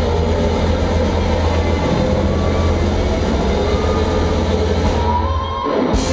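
Live rock band playing loud in a club, heard from the crowd: a dense, droning wash of amplified instruments over a heavy steady bass hum. It drops out briefly just before the end and then comes back in.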